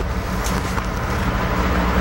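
Steady low rumble and hum with an even hiss, a continuous background noise that carries on under the voice.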